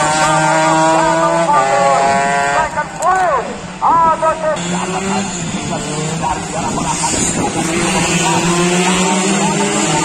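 Two-stroke road-race motorcycle engine at high revs as it passes, the pitch holding, then rising and falling in quick swoops with the throttle and gear changes.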